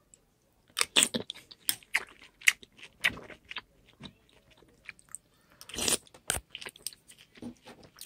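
Close-up chewing of a mouthful of Raisin Bran flakes in milk: a run of short, sharp crunches through the first few seconds, another burst about six seconds in, then scattered smaller ones.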